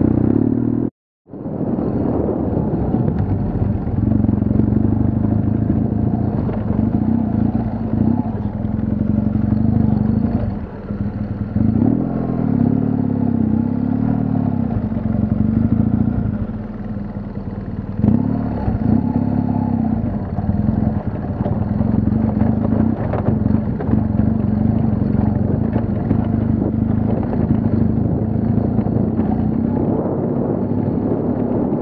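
BMW HP2 Enduro's boxer-twin engine running while riding a dirt trail, the note easing off and picking up again several times with the throttle. The sound drops out completely for a moment about a second in.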